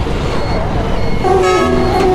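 A vehicle horn sounds once, a short steady honk about a second and a half in, over the constant low rumble of street traffic and auto-rickshaw engines.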